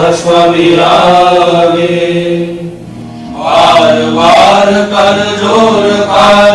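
A devotional prayer sung as a slow chant, the lines long and drawn out. There is a short break in the singing about halfway through, and a steady low drone carries on through it.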